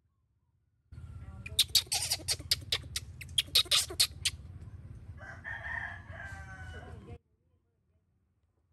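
A baby macaque screaming in a rapid run of short, shrill cries for about three seconds, followed by a quieter wavering call of about two seconds.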